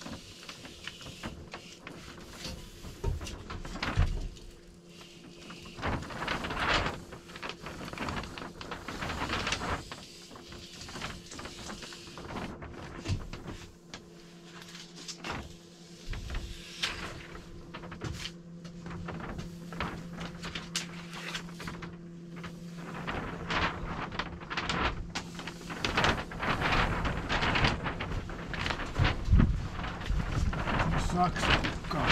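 Aluminium-foil vapour barrier crinkling and rustling as it is handled and taped along the ceiling seams, with irregular crackles and a few knocks. A faint steady hum runs underneath.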